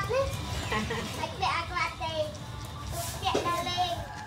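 Children's voices chattering in short, high-pitched phrases, with other family voices talking casually in the background.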